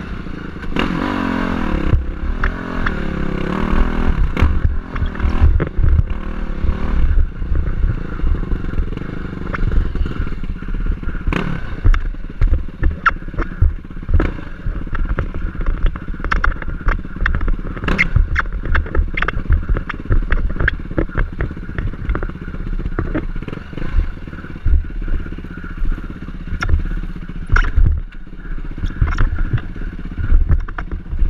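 Dirt bike engine running over rough rock, its pitch rising and falling with the throttle in the first few seconds. Frequent sharp knocks and clatter come as the bike crosses the rocks.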